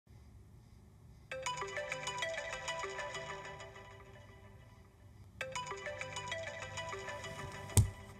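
An iPhone sounds a bright, repeating melodic ringtone: the phrase starts about a second in, cuts off near five seconds and starts again. Near the end a hand slaps down onto the phone with a sharp thump.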